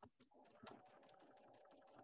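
Sewing machine stitching a seam: a quiet, steady motor hum with rapid needle clicks, starting about a third of a second in.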